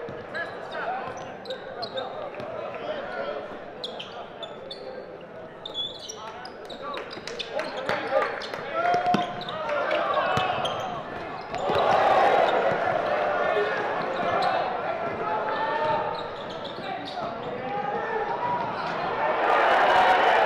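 Live basketball game in a gym: a ball bouncing on the hardwood floor, sneakers squeaking, and crowd chatter that grows louder a little past halfway.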